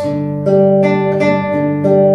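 Nylon-string classical guitar fingerpicked in a slow arpeggio: a bass note plucked by the thumb, then single treble notes about three a second, each left ringing under the next.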